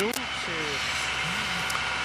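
A steady engine hum with faint distant voices.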